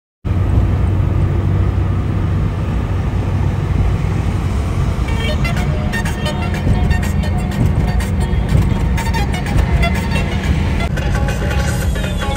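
Steady low rumble of a car driving, heard from inside the cabin, with music playing along with it. The sound cuts in abruptly just after the start.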